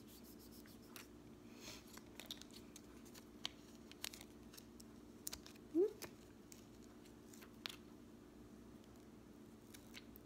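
Faint scattered crinkles and ticks of the thin plastic backing and wrapper of a skin patch being peeled off and handled by fingers, over a steady low hum. A short "ooh" about six seconds in.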